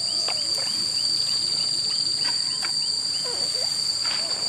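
Steady, high-pitched drone of insects, with a run of short chirps repeating a few times a second. Occasional small splashes and rustles come from someone wading in shallow muddy water among grass.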